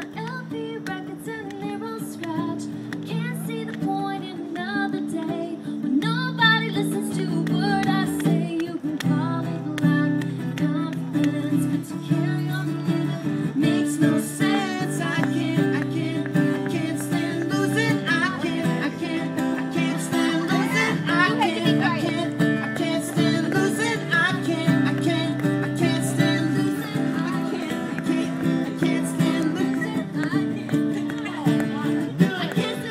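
Live acoustic pop song: an acoustic guitar strummed in a steady rhythm with a woman singing lead over it through a microphone.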